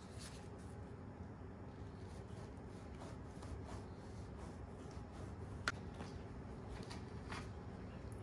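Faint rasping of a knife sawing lengthwise through the crust of a French loaf, with one sharp click about two-thirds of the way through.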